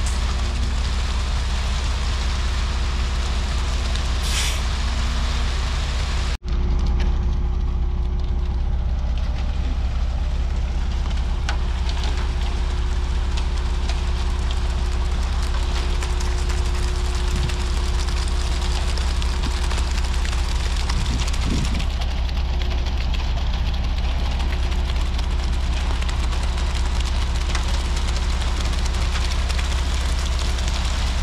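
Concrete mixer truck's diesel engine running steadily under load while its drum turns to discharge concrete down the chute. The sound drops out for an instant about six seconds in.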